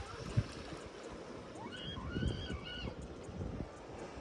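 Wind buffeting the microphone on an open beach, with low rumbling thumps and a quiet wash of small waves. About two seconds in, three short high-pitched calls that rise and fall sound in the distance.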